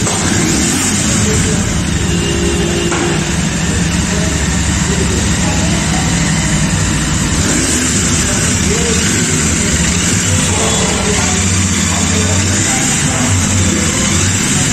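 Royal Enfield Interceptor 650's 648 cc parallel-twin engine running at idle, a steady low-pitched note, with voices in the background.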